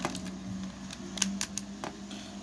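Hard plastic parts of a Transformers Masterpiece MP-29 Shockwave figure clicking as they are handled and plugged together during transformation: a few short, sharp clicks, several of them close together about a second in.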